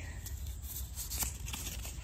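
Faint handling noise: a few light clicks and rustles over a low steady rumble of outdoor background.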